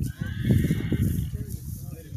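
A horse whinnying: one high call about a second long at the start, over a low rumbling.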